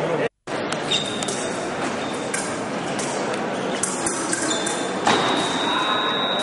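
Steady high-pitched electronic beep of a fencing scoring machine: a short one about a second in and a longer one from about four and a half seconds, the machine's signal that a touch has been registered. It sounds over a hum of voices in a large hall, with scattered light clicks.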